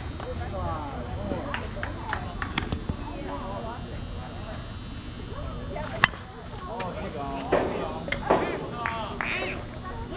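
A softball bat hitting a pitched ball: one sharp crack about six seconds in, followed by players shouting. Distant voices chatter throughout.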